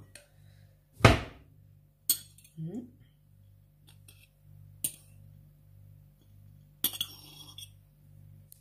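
A metal fork clinking and scraping against a ceramic plate as pumpkin cake pieces are rolled in grated coconut. There are a few sharp knocks, the loudest about a second in, and a short scrape near the end, over a steady low hum.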